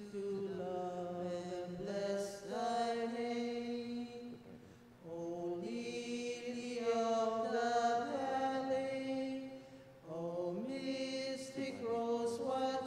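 Slow sung Communion hymn, long held notes in phrases with short breaks about five and ten seconds in.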